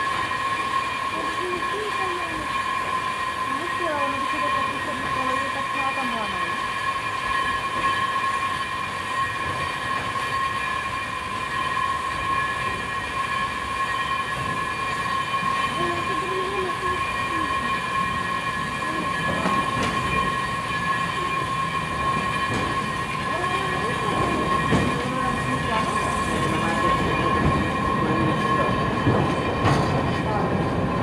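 Riding in a cable-hauled funicular car: a steady high whine with the running noise of wheels on rails and the cable over its track rollers. The rumble grows louder over the last ten seconds as the oncoming car draws near and passes.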